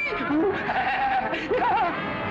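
A man letting out wordless, wavering cries: a few short rising-and-falling yelps, then a held wobbling note, and a quick warbling cry near the end.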